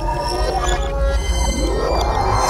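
A recorded sample played back through the Manipuller Dream-Catcher sensor sampler at altered speed, giving eerie pitch-shifted held tones. Near the end the pitch slides steadily upward as the playback speeds up under the pull on the string web.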